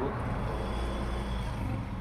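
Steady low background hum with a faint even noise and no distinct events.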